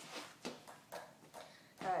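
About four light knocks and scuffs of a skateboard being set down on a concrete floor and shoes stepping onto its deck.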